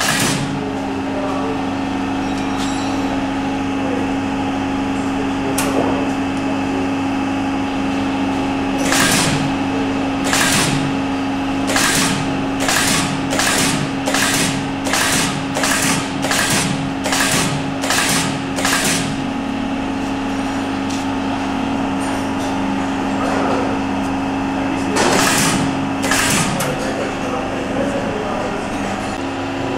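Wire side lasting machine working along the side of a boot, firing a series of short, sharp strokes as it pulls the upper over the last and fastens it with wire. After two single strokes comes a quick regular run of about ten, roughly one and a half a second, then two more near the end. A steady factory hum runs underneath.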